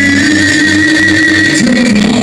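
Live heavy metal band playing loudly, with one long held note that steps down in pitch about one and a half seconds in.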